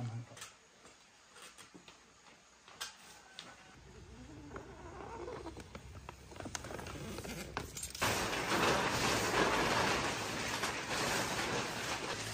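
Utility knife cutting a thick sheet of plastic film: quiet at first with a few small clicks and scraping. About two-thirds in, loud steady rustling and crinkling of the plastic sheeting sets in.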